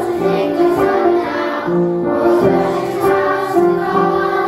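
Children's choir singing together, holding notes that change in pitch from one to the next.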